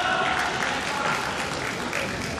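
Spectators applauding in a sports hall, with voices mixed in.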